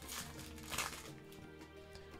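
Quiet background music, with the crinkle of a foil trading-card booster pack being opened by hand twice within the first second.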